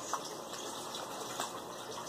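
Steady background hiss of room noise in a pause between speech, with a couple of faint clicks.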